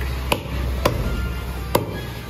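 Butcher's cleaver chopping goat meat and bone on a wooden chopping block: three sharp chops at uneven intervals, the last about three-quarters of the way through.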